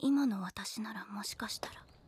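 Speech only: a single voice speaking one short line, fairly quietly.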